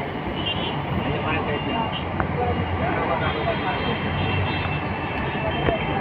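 Steady vehicle and traffic noise, with indistinct voices talking underneath it.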